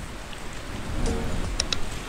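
Steady rushing water noise, with two short sharp clicks near the end.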